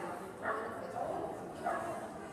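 A dog barking twice while running an agility course, short high yips about half a second in and near the end.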